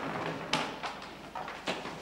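Two sharp knocks, about half a second in and near the end, with a few lighter knocks and scrapes between: plastic chairs clattering as people stumble and fall among them.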